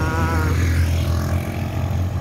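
Street traffic on a wet road: cars and motorcycles going by under a steady low rumble. A short pitched tone sounds in the first half second.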